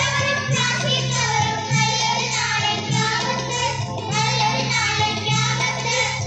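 A group of girls singing a song together into microphones, amplified over a loudspeaker, over a low accompanying note that breaks off and restarts about once a second.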